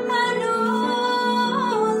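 A woman singing a slow Spanish-language hymn, holding long notes with a slide up in pitch near the end.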